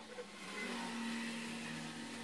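A motor-driven machine running, a steady hum with a rushing noise that comes in about half a second in.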